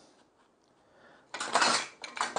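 Tools being handled and shifted on a wooden workbench: after about a second of near silence, a short burst of rustling, clattering handling noise.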